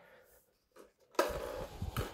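Near silence, then about halfway through a brief scraping rustle as the foam model plane is handled and rolled over a wooden floor on its wheels and 3D-printed plastic skis.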